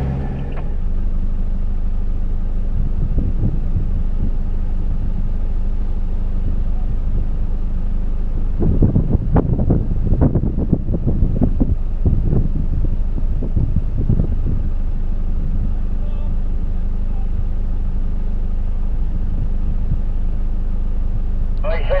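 Jeep Wrangler's engine running steadily at low revs as it drives a sandy track, with a run of irregular knocks and rattles about halfway through as it jolts over rough ground.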